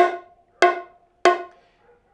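Three open edge tones struck on the high drum of a pair of bongos, evenly spaced about two-thirds of a second apart. Each is a sharp crack that rings briefly with a clear pitch before dying away.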